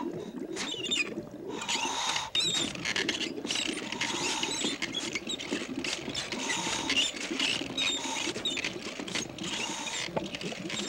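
Animation sound effects of a home-made wooden lever-and-pump contraption at work: a continuous rattling clatter with a squeak repeating roughly every second and a half, and scattered higher squeaks.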